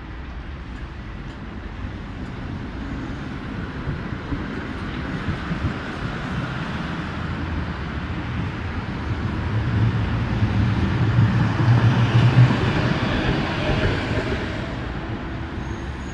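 Düwag GT8S articulated tram passing close by: a steady rumble that builds as it approaches, with a low steady motor hum at its loudest about ten to twelve seconds in, then easing off.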